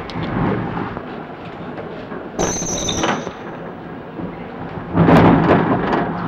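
Busy noise with a short, high-pitched squeal about two and a half seconds in and a loud thud near the end.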